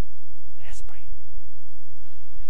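A man's short breathy whisper close to a microphone, about two-thirds of a second in, over a steady low hum.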